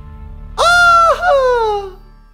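A man's high-pitched falsetto wail in mock fright: one held note, a brief break, then a second note sliding downward and fading out near the end, over faint low background music.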